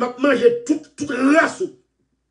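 A man speaking in short runs, ending just before the close.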